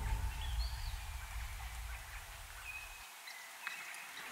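Music fading out, with a few faint, short bird chirps over it.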